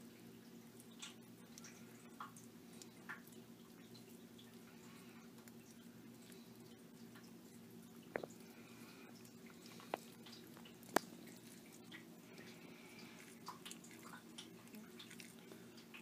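Blue tongue skink eating wet meat-and-vegetable mix from a bowl: faint, scattered wet clicks and smacks as it laps and chews, with one sharper click about eleven seconds in. A steady low hum runs underneath.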